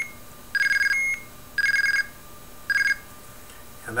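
Homemade Arduino blue box in IMTS ANI mode sending digits by hand-keyed presses. There are three short bursts, about a second apart, of two high tones in quick alternating pulses: the pulse coding that spoofs a mobile phone's ID number to the base station.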